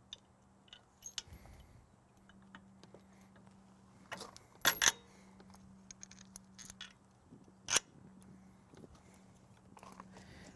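Metal hardware clinking: the steel diverter valve, bolts and washers knocking against a steel mounting bracket as the valve is slid onto it. A few sharp clicks, the loudest a close pair about four and a half seconds in and another near eight seconds, with light ticks between.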